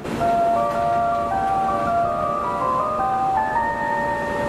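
A chime-like electronic melody of held, overlapping notes, starting abruptly and stepping up and down in pitch, over a steady low noise: outro music.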